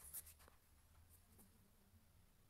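Near silence: faint room tone with a low hum and a few light ticks, the loudest just after the start.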